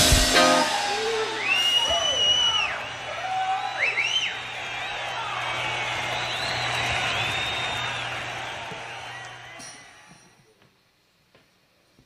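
A rock band's final chord cutting off just after the start, followed by several whoops and yells over the fading ring of the amplifiers and a steady low amp hum, all dying away about ten seconds in.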